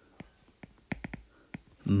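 A stylus tapping and clicking on a tablet's glass screen while handwriting: a scatter of small, sharp clicks, about six in two seconds.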